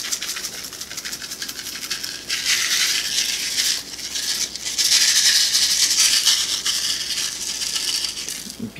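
Sprinkles rattling inside small plastic containers as they are shaken out over a frosted cake: a steady run of rapid rattling that grows louder about two seconds in, drops off briefly around the middle, then carries on.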